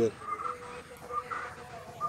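Faint bird calls in the background, several short calls spread over the two seconds.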